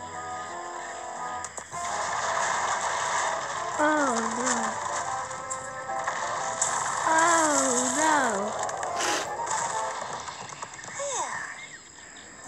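Cartoon soundtrack: music that stops after about a second and a half, then a noisy hiss over which a cartoon character's high voice slides up and down, twice, about four and seven seconds in. A sharp click comes about nine seconds in.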